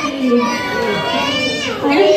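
A group of young children shouting and chattering over one another, with one voice sliding down in pitch near the end.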